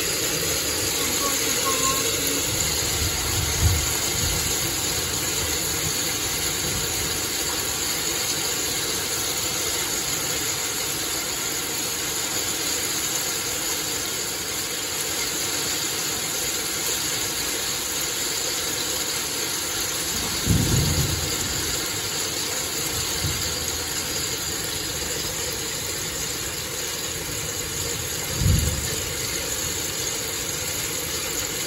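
Steady hiss of rain and hail falling, with a few short low thumps: one about four seconds in, two around twenty to twenty-three seconds, and one near the end.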